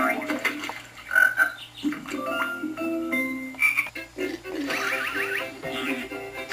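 Cartoon frog croaks and short plinking tones from the Nick Jr. frog-logo ident, played backwards through a screen's speakers, with a warbling sound about five seconds in.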